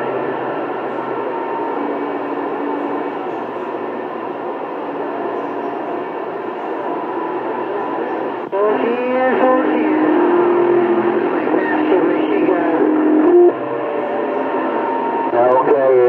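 CB radio receiver on channel 28 during long-distance skip: a hiss of band noise with steady heterodyne whistles and faint, garbled distant voices. About eight and a half seconds in, a stronger signal cuts in with warbling tones and garbled voice over the noise.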